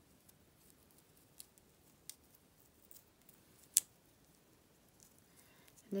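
Light handling sounds of string and wooden lolly sticks as a string loop is tied on, with a few faint ticks and one sharp click a little past halfway.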